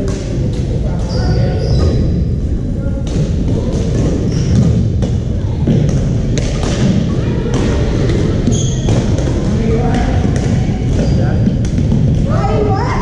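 Badminton rackets striking a shuttlecock in a rally, sharp smacks at irregular intervals, mixed with brief high squeaks of court shoes and the chatter of many players echoing in a large sports hall.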